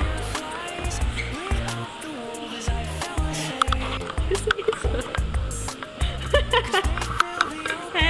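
Background music with a heavy, repeating bass beat and a voice over it.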